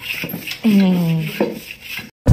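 Wooden hand plane rasping along the edge of a cupboard panel in repeated strokes. A short human voice sound, falling in pitch, cuts in briefly in the middle.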